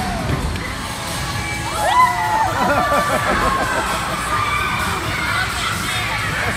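Crowd of children shouting and squealing over one another, with background music. One child's loud, held shout about two seconds in is the loudest moment.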